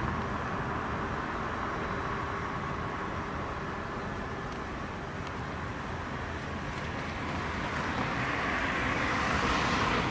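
Steady road-traffic noise, growing louder near the end as a vehicle passes.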